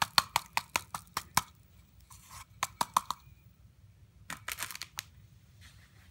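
The plastic body and feet of a ROBOTIS Mini humanoid robot knocking and rattling in a hand as it is shaken to get sand out of its feet: a quick run of sharp clicks at about six a second, then a few more knocks and a short rustling scrape a little past four seconds.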